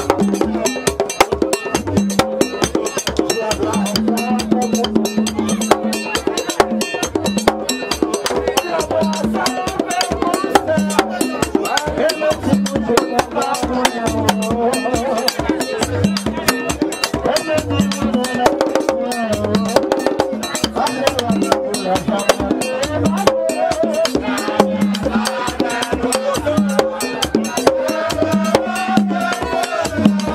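Vodou ceremonial music: fast, dense drumming with a sharp clacking percussion part, and voices singing over it.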